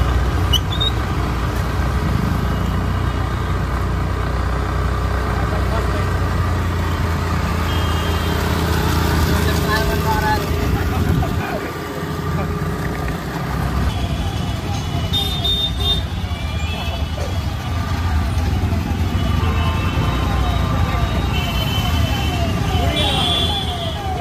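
Motorcycle engines running at low speed in congested street traffic, a steady low hum under general road noise. Horns beep a few times, and from about halfway through a siren sounds in quick, repeated falling sweeps.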